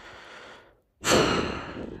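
A man draws a breath, then lets out a long, heavy sigh starting about a second in, loudest at its start and fading away.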